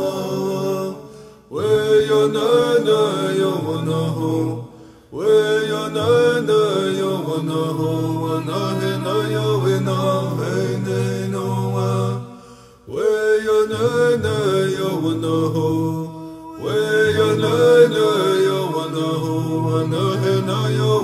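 A man singing a Native American Church peyote song in chant-like phrases, each broken by a short pause for breath roughly every four to seven seconds.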